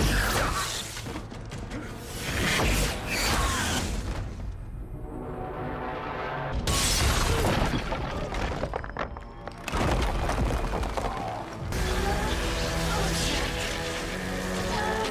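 Action-film fight soundtrack: a music score under repeated crashes, booms and shattering impacts, with a long heavy crash about seven seconds in as a body is slammed into a cracking wall. Near the end the score carries on with held notes.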